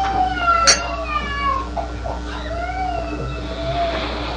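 A voice chanting a Sanskrit verse in a slow melody, each line drawn out with long rising and falling glides. There is a steady low hum underneath and one sharp click less than a second in.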